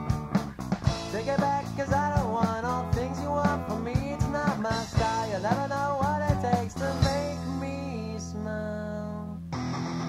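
Three-piece punk band recording playing an instrumental passage: a bending guitar melody over bass and drums. About seven seconds in the drums drop out and chords ring on, and near the end the band comes back in with a fuller strummed section.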